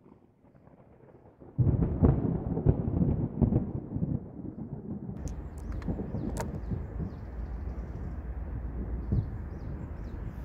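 A thunder rumble starts suddenly about a second and a half in and eases off over a couple of seconds. It gives way to a steady low outdoor hum, with a few sharp high clicks and faint high chirps.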